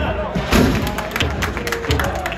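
Football supporters chanting together to a drum beat, with a sustained sung note and a run of sharp hits or claps from about half a second in.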